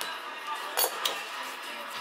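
Two sharp light clicks about a quarter of a second apart, near the middle, from a loose utility knife blade and a plastic bottle cap being handled on a tabletop. A television plays music and talk in the background.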